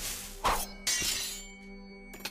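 Anime sword-fight sound effects: two sharp metallic sword clashes about half a second apart, each leaving a ringing "ching", over background music.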